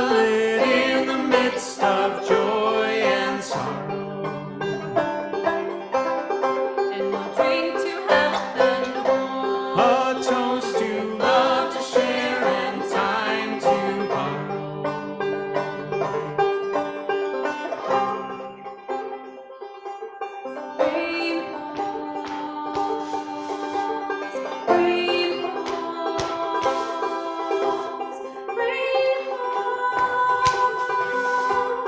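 Banjo picking a tune, with a brief quieter stretch about two-thirds of the way through.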